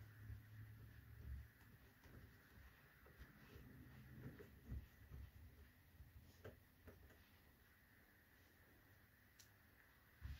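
Near silence with a few faint clicks and scrapes of a screwdriver working a power-supply mounting screw into the PC case.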